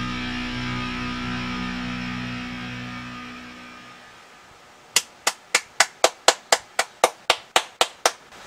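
A death metal track ends on a held chord that fades away over about four seconds, then a person claps steadily, about a dozen claps at roughly four a second.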